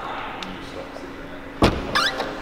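Ferrari 458 Italia's door being shut: a single slam about one and a half seconds in, with a brief rattle just after.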